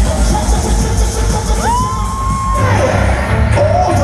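Live concert music over an arena sound system with a heavy pulsing bass, and an audience cheering. In the middle a single high voice note rises, holds for about a second and falls away.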